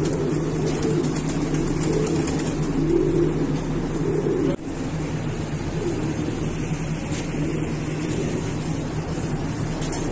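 Domestic pigeons cooing in a loft, their low calls swelling and fading over a steady low mechanical hum. The sound breaks off abruptly about halfway through and carries on.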